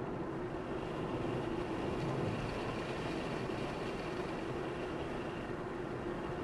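Car driving along a highway: steady road and engine noise, with a faint high whine that comes in about two seconds in and fades a couple of seconds later.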